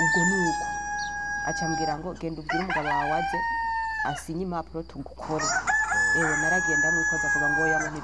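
A high, long-held call sounds three times: about two seconds at the start, briefly around the middle, and about two seconds near the end. Each call holds one steady pitch that sags a little as it ends, over a woman talking.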